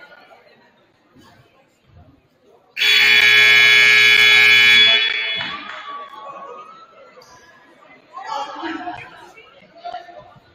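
Gymnasium scoreboard buzzer sounding once: a loud, steady blare about two seconds long as the game clock runs out, marking the end of the period. It fades in the hall's echo.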